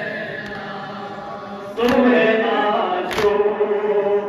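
Men chanting a Muharram nauha (lament) in unison, led over a microphone, with long held notes. Two sharp collective chest-beating (matam) strikes land about 1.8 and 3.2 seconds in, and the chanting gets louder with the first strike.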